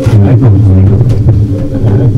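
Loud low drone from a noise-music improvisation, with scattered crackles running through it.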